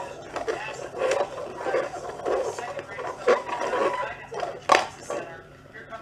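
Plastic stacking cups being slid and knocked against each other on a hardwood floor as they are shuffled, with sharp clacks, the loudest about a second in, past the middle and near five seconds.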